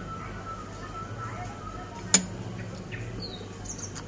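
Metal cutlery clinks once, sharply, against the dish about two seconds in, among the small sounds of eating. Birds chirp briefly near the end.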